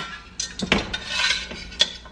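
Stainless steel pot and utensil clinking as the pot is picked up and handled: about three sharp clinks with a short scrape between them.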